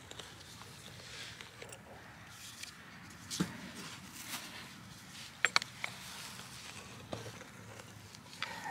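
Quiet handling sounds of a metal corkscrew tie-out stake being twisted into lawn with a wooden dowel as a lever, held back by a buried rock: faint rustling with a few sharp clicks, one about three and a half seconds in, a quick pair about five and a half seconds in and one near the end.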